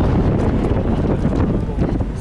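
Wind buffeting the microphone on the open deck of a ferry underway, a loud, uneven low rumble with the ship's own noise beneath it.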